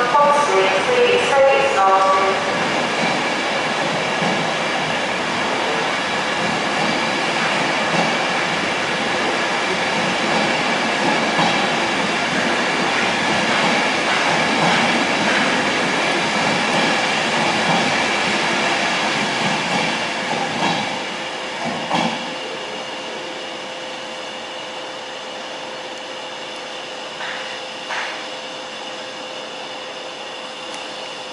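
Long-distance express train of Mk4 coaches running along the platform: a loud, steady rush of wheels on rail with a high whine. It fades after about 20 seconds as the train goes by, then a couple of sharp clicks follow.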